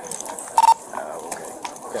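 A short, loud electronic beep, one steady tone lasting a fraction of a second about half a second in, over the murmur of people talking.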